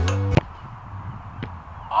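Background music cuts off with a sharp knock about half a second in. It is followed by quiet outdoor air and a fainter knock about a second later: a football being struck on an artificial-turf pitch.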